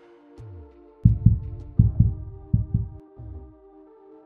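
Electronic background music: a held synth chord over deep bass notes that slide down in pitch, with a cluster of heavy bass hits from about one to three seconds in.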